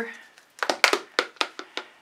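A quick, irregular run of sharp clicks and knocks, about eight in a second and a half, starting about half a second in: bottles on the painting table knocking together as they are searched through for a bottle of cell activator.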